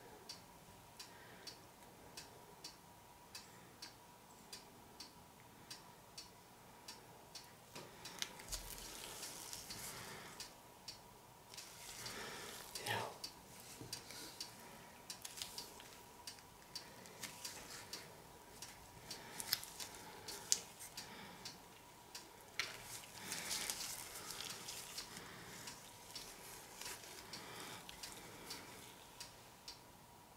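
Quiet room with a steady tick about once a second. Soft rustling and scraping as gloved hands press and shift a canvas on a paint-covered plastic sheet, louder around the middle and again a little past two-thirds through.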